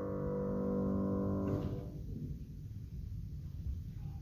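Grand piano's final chord ringing out and fading, breaking off about a second and a half in; low room tone after.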